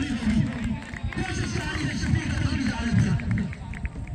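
Men's voices talking and calling out close to the microphone, over a steady low outdoor rumble.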